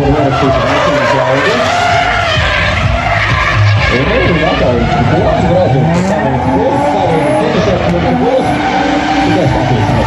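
BMW E36 drift car sliding through the course, its engine revving up and down continuously while the rear tyres squeal and skid.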